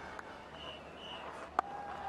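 A cricket bat striking the ball: one sharp crack near the end, over faint open-air ground ambience.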